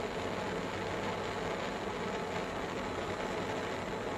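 Handheld propane torch burning with a steady, even hiss, its gas turned up high.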